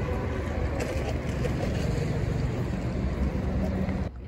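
Wind buffeting a phone microphone outdoors: a steady, loud noise, heaviest at the low end, that starts and stops abruptly with the shot.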